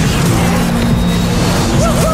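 Action-scene sound mix: a loud, steady rushing roar like a craft speeding past, over held low music notes. A new pitched tone rises in near the end.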